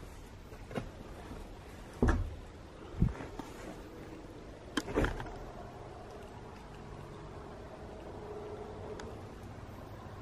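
A few scattered knocks and low thumps, about six, over a quiet background, with a faint drawn-out tone in the second half.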